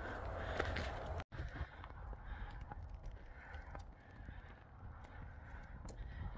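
Wind rumbling on a phone microphone, with faint footsteps on a dirt trail; the sound cuts out completely for a moment about a second in.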